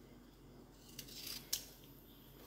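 Kitchen knife slicing a carrot on a plastic cutting board: a faint, short cutting rasp about halfway in, ending in a sharp tap of the blade on the board.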